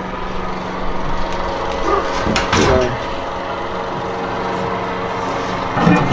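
A brief metal clatter about two and a half seconds in, as a drip pan is set on the Big Green Egg's ceramic plate setter and the cooking grate handled, over a steady hum.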